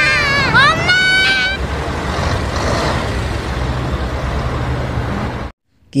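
A child's high, strained voice crying out "Mom! Mom!" over city street traffic, then the traffic alone, a steady low rumble of buses and trucks, which cuts off suddenly near the end.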